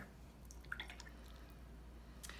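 A quiet room with a steady low hum, broken by a few faint small ticks about half a second to a second in.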